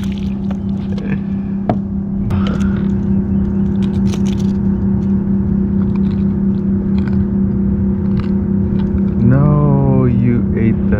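Steady motor hum, one unchanging pitch throughout, with a few sharp knocks and splashes in the first seconds as a redfish is swung aboard in a landing net. Near the end a tone rises and then levels off.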